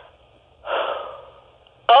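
A deep, audible breath drawn in over a telephone line. It starts about half a second in and trails off over about a second.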